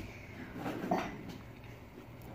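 Soft, steady hiss of a lit gas stove burner heating a frying pan of oil, with a brief faint murmur about a second in.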